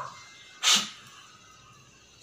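One short, sharp burst of breath from a person, just under a second in.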